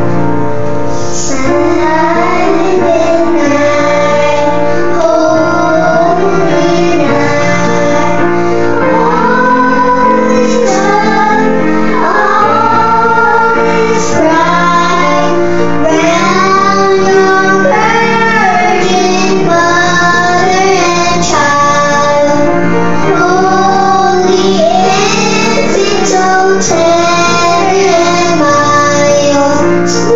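Two children singing a Christmas carol in Korean into handheld microphones, with grand piano accompaniment under the voices.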